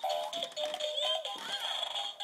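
Electronic toy tune played through the speaker of a ride-on bouncing pony toy: a melody of short steady notes, with a rising-and-falling sound effect about a second in.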